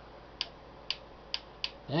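Four short, sharp clicks, unevenly spaced, as the controls of a President Madison CB radio are worked by hand.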